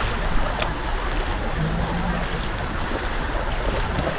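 Steady rushing of deep floodwater churned by people wading and pushing a stalled van through it.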